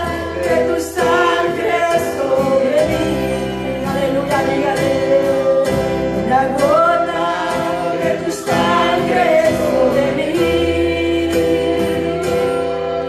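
Live gospel worship music: a woman sings a praise chorus into a microphone, holding long notes and gliding between pitches, with a band accompanying her on sustained bass and chords.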